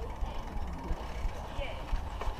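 Riding noise from a bicycle in motion, heard through a GoPro Hero 3: a steady low rumble of wind and road, with faint mechanical clicking from the bike.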